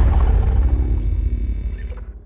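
Tail of a logo-intro sound effect: a deep boom that dies away slowly, with a faint steady tone above it, fading out just after the end.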